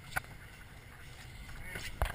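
A single sharp knock as the camera is handled, then a low steady rumble of wind and boat noise.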